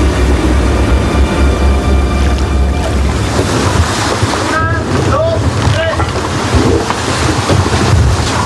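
Sea-and-wind ambience of a sailing ship at sea: a steady rush of wind and waves over a low rumble. From about halfway through come several short squeals that rise and fall in pitch.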